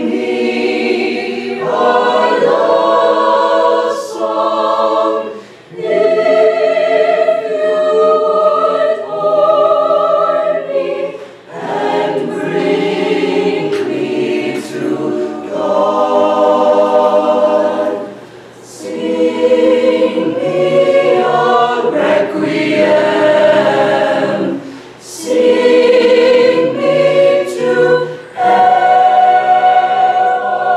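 Mixed high school choir singing unaccompanied in parts: sustained chords in phrases of a few seconds, each broken by a brief pause for breath.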